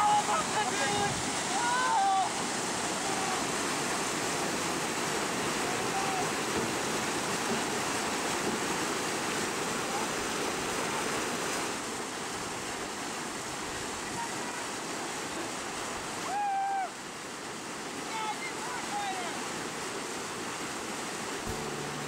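Steady rush of creek water pouring through rapids over a concrete culvert spillway. A few short voice calls rise over it near the start and again late on.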